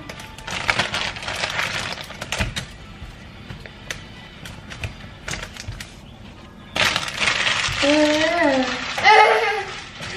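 Plastic packaging crinkling and microfibre cloths rustling as they are handled and folded into a wicker basket, a quick run of small crackles and clicks. Near the end a voice calls out in rising and falling sounds without clear words.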